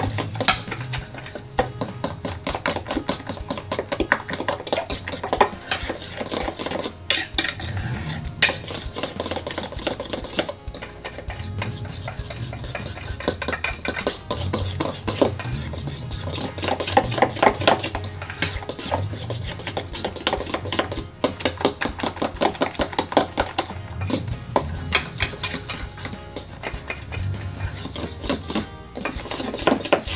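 A metal spoon stirring a wet banana batter in a stainless steel bowl: continuous quick scraping and clinking against the bowl's sides.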